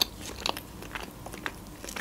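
A person chewing a mouthful of sushi roll with the mouth closed, close to the microphone: a scattering of small clicks, a few every second.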